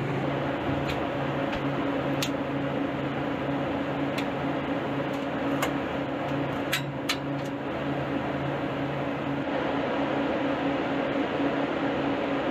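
Steady hum of walk-in freezer refrigeration equipment running, with a few single light clicks as the sensor wiring is handled.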